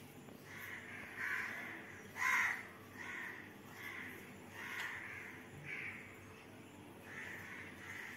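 A crow cawing repeatedly, a string of short calls about one a second, the loudest a little over two seconds in.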